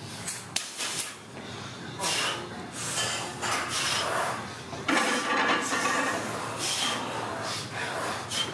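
Weight-room noise: indistinct voices and shuffling, with a couple of sharp clicks about half a second in, while a lifter sets up under a loaded barbell in a squat rack. The noise gets louder about five seconds in.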